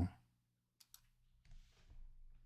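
A man's word trails off, then near silence with a few faint clicks a little under a second in and a soft breath.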